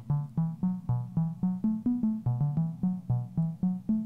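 Eurorack modular synthesizer voice playing a fast sequenced pattern of short, plucky low notes, about five a second, stepping among a handful of pitches. The pattern comes from a Westlicht PerFormer track whose clock divider is being modulated by a recorded CV curve, which shifts the note timing.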